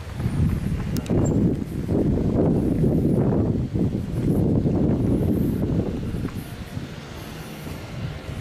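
Wind buffeting the microphone during a bicycle ride, a low rumble that eases off over the last couple of seconds.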